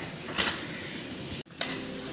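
Bicycle creaking and clicking during a wheelie, with one short noisy knock about half a second in and a brief drop-out near the middle.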